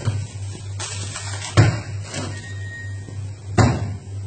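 Pot of water boiling on the stove, a steady hiss over a low hum, broken by two sharp knocks about two seconds apart, one about a second and a half in and one near the end.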